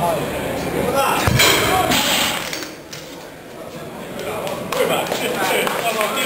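Weight plates on a Rolling Thunder grip handle dropped back onto the floor: a single heavy thud about a second in, with shouting voices around it.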